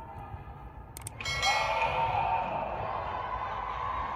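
Subscribe-button animation sound effect: sharp mouse clicks about a second in, followed by a ringing chime that slowly fades.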